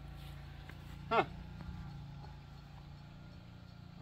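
Gas-engine pressure washer running steadily at a low level, a constant engine hum.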